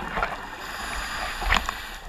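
Underwater sound of a scuba diver breathing through a regulator: a steady bubbly hiss with scattered sharp clicks, a cluster of them about one and a half seconds in, and a faint thin high whistle in the second half.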